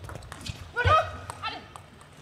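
Table tennis ball clicking off bats and table as a rally ends, then a woman player's short shouts about a second in, as the point is won.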